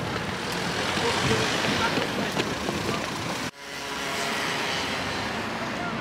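City street ambience: steady traffic noise with murmuring passers-by. The sound cuts out abruptly for a moment about three and a half seconds in, then picks up again.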